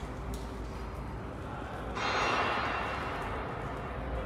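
Construction-site machinery noise inside a tunnel: a steady low hum, with a hissing noise that starts suddenly about halfway through and slowly fades.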